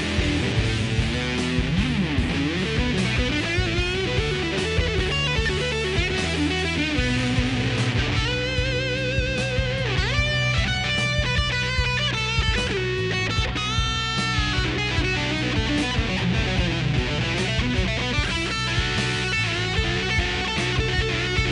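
Epiphone Firebird-style electric guitar played through a ProCo RAT distortion pedal: a distorted lead passage with bent notes and wide vibrato on held notes, over a low sustained note from about a third of the way in.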